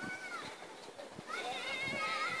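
High-pitched voices calling in the distance: a short rise-and-fall call at the start, then a longer wavering call from about two-thirds of the way in.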